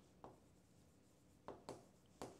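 Faint taps and scratches of a pen writing on a touchscreen display: one short stroke about a quarter second in, then two more about a second and a half in.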